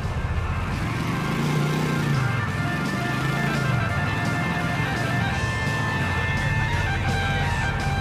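Video-game motorcycle engine running under way, its pitch rising and falling a few times as it speeds up and slows, with music playing over it.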